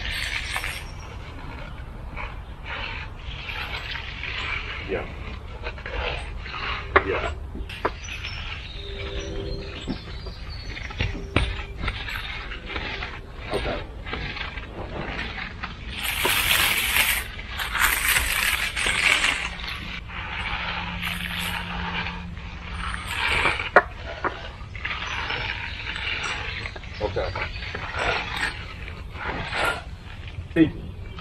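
Steel hand tools scraping and rasping in short irregular strokes along the edges of a freshly poured concrete slab as it is edged and hand-floated, louder and harsher for a few seconds past the middle.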